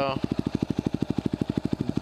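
2010 Yamaha WR250R's single-cylinder four-stroke engine idling through an FMF Megabomb header and FMF Q4 exhaust, a steady, fast, even pulse of low exhaust beats.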